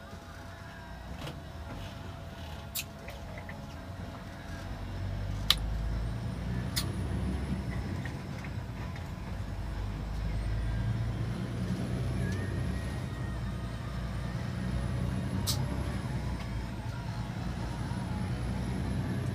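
Engine and road noise heard from inside a moving vehicle's cabin: a steady low rumble that grows louder about five seconds in, with a few sharp clicks.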